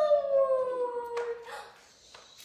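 A woman's long, high-pitched, drawn-out affectionate "aww" that glides slowly down in pitch and fades out about a second and a half in.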